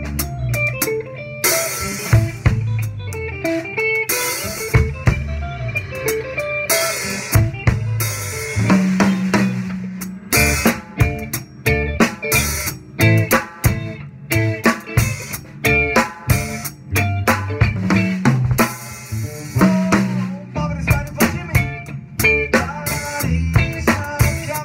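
Drum kit played close up, with snare, bass drum and tom hits and several crashing cymbal washes, while an electric guitar and bass play along as a live band.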